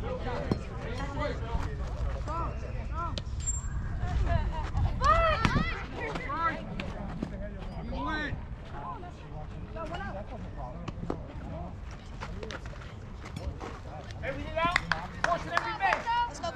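Untranscribed shouts and calls from people around the field, loudest about five seconds in and again near the end, over a low rumble of wind on the microphone.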